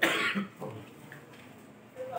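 A person coughing: one short, loud cough at the very start.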